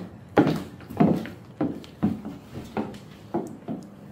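Footsteps of 6-inch high-heel platform mules on a hardwood floor: sharp heel clacks at a steady walking pace, about two a second, fading in the last second.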